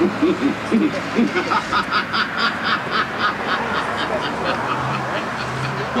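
A brief bit of voice, then a rapid cackling laugh of even pulses, about five a second, lasting some four seconds and thinning out near the end.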